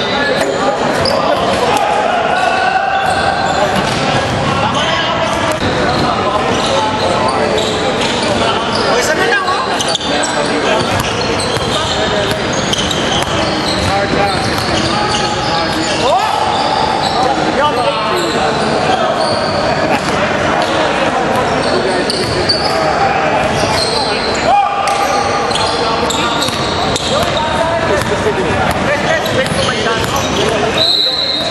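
Basketball bouncing on a hardwood gym floor during a game, mixed with players' voices and calls echoing around a large gymnasium.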